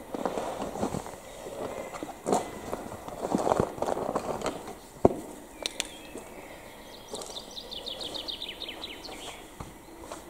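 Footsteps scuffing over a gritty concrete floor in an empty brick room, with a single sharp click about five seconds in. Near the end a bird trills rapidly in the background.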